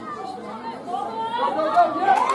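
Several women's voices shouting and calling over one another, as rugby players do at a scrum, getting louder near the end.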